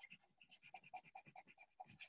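Near silence, with faint quick scratches and taps of a stylus writing on a tablet screen, several strokes a second.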